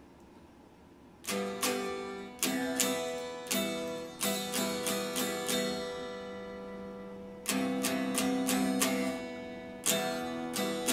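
Electric guitar played with a pick: after a quiet first second, chords are struck in a rhythm. One chord is left ringing and fading for a couple of seconds in the middle, and then the strumming picks up again.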